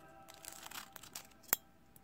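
Clear plastic wrapper crinkling softly as a stack of trading cards is handled and unwrapped, with a single sharp click about one and a half seconds in.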